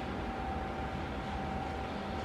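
Steady room noise: an even hiss and low hum with a faint, steady whine, and no other events.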